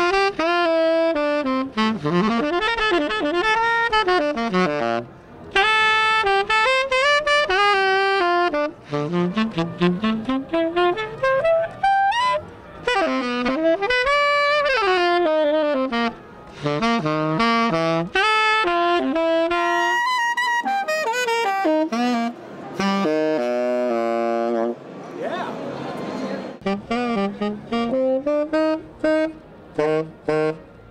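Unaccompanied tenor saxophone, an RS Berkeley Virtuoso in black nickel finish, played in fast improvised jazz runs, phrase after phrase with short breaks between them.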